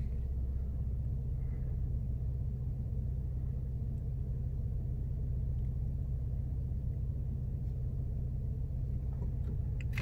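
2019 Lincoln Navigator's twin-turbo V6 idling, heard from inside the cabin as a steady low hum.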